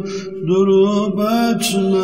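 Unaccompanied Turkish ilahi: a male voice sings a bending, ornamented line over a steady hummed vocal drone. A short breath comes in the first half second.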